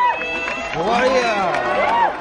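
Concert audience members shouting out after a song, several voices overlapping, each call rising and then falling in pitch.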